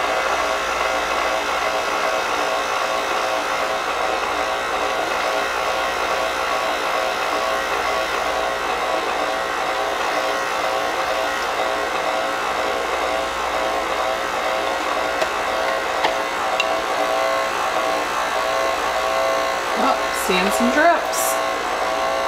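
KitchenAid Classic stand mixer running steadily at speed two, its motor and gear drive turning a food strainer attachment as blackberries are pressed through it.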